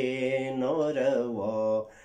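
A man singing a Wakhi ghazal unaccompanied, in long drawn-out notes with wavering turns of pitch; the voice stops just before the end.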